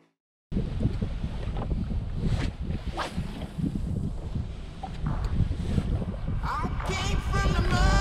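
Strong wind buffeting the microphone in open air over water: a rough, steady low rumble that starts about half a second in. Near the end, music with singing comes in over it.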